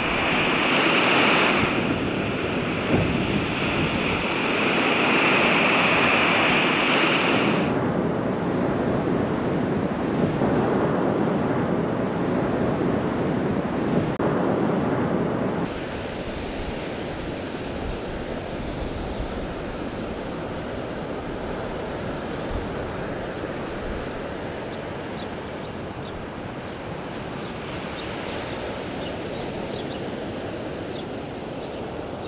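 Surf washing onto a sandy beach with wind, an even rushing noise that drops in level about halfway through.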